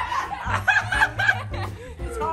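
Young women laughing, with a short run of about three quick chuckles near the middle, over background music.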